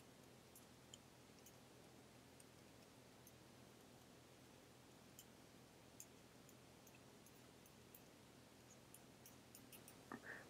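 Near silence, with faint scattered ticks of a Wacom pen tip touching down on a laptop touchscreen during handwriting.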